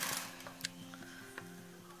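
Soft instrumental background music with steady held notes. A brief rustle of handled paper and packaging at the start, then two faint ticks.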